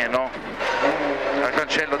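Mitsubishi Lancer rally car's turbocharged four-cylinder engine running hard at speed, heard from inside the cabin, with the co-driver's voice calling pace notes over it.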